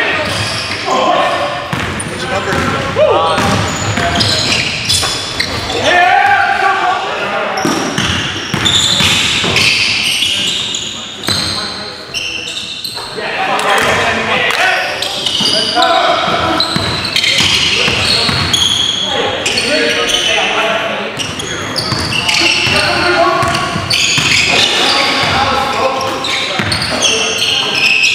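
Live basketball game in a gym: the ball bouncing on a hardwood floor and players shouting and calling out, all echoing around the hall.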